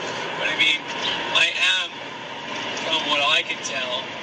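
A man's voice speaking, over the steady noise of a car cabin while driving.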